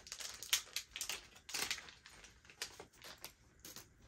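A small packet being opened by hand: irregular crinkling and crackling, with a few sharper snaps, as the packaging is pulled apart.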